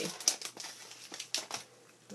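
Clear plastic packaging sleeve crinkling and rustling as it is handled, in a few short bursts that die away near the end.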